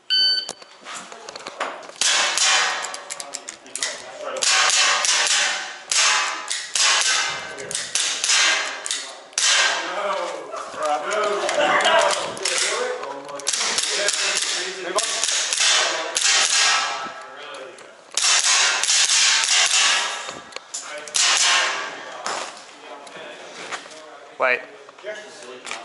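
A short beep at the start, then repeated shots from an APS Shark gel blaster pistol, its slide cycling, amid sharp knocks and movement noise as the shooter works through the course.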